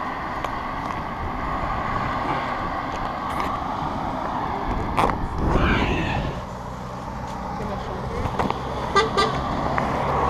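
Road traffic passing below, with a passing driver's horn tooting in short blasts near the end.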